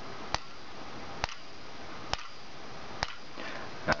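Coil of a homemade capacitor-discharge magnetic pulser clicking once with each pulse, as an SCR fires a bank of photo-flash capacitors through it: five sharp ticks a little under a second apart. The pulses are running strong, with a small bulb in series as the current limiter.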